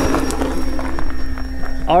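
Electric motor and propeller of a foam RC Trojan T-28 trainer running at a steady high pitch during its takeoff run and climb-out.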